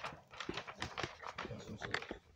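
A thin plastic bag crinkling and rustling as it is handled, in quick irregular crackles.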